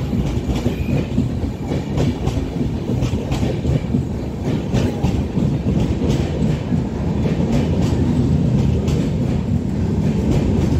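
Passenger coaches of an Indian express train rolling past close by as it pulls into the station, a steady loud low rumble with wheels clicking over the rail joints.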